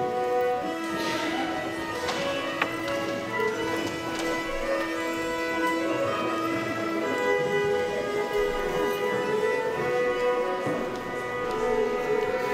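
Two fiddles playing a tune together, bowing held notes with many overtones.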